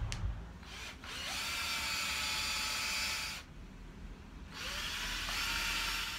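Power drill-driver running in two spells of about two seconds and a second and a half, its pitch rising as it spins up each time, driving inch-and-a-quarter wood screws up through the chair's wooden rungs into a pine frame.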